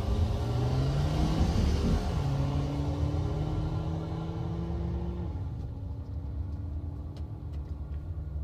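A VW Jetta's turbocharged 2.0-litre four-cylinder engine heard from inside the cabin as the car pulls forward at low speed. Its pitch rises for about two seconds, steps down and holds steady, then drops lower again after about five seconds as the sound eases off.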